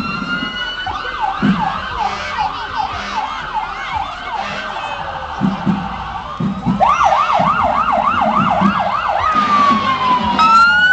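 Emergency vehicle electronic sirens: a slow rising wail at first, then rapid yelp sweeps about three a second, loudest from about seven seconds in, turning back to a slow falling wail near the end.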